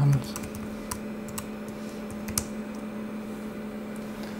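Keystrokes on a computer keyboard: a handful of separate clicks spread over the first two and a half seconds, with a steady low hum underneath.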